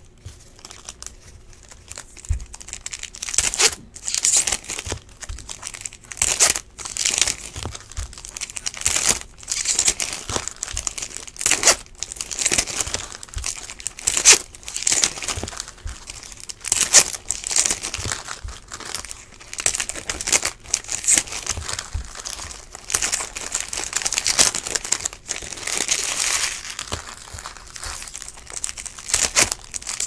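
Foil wrappers of 2015 Topps Valor Football trading-card packs crinkling and tearing as packs are ripped open by hand, in irregular repeated bursts.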